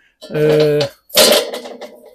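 A man's voice: a drawn-out hesitation sound held on one pitch, then a short, loud, breathy hiss about a second in.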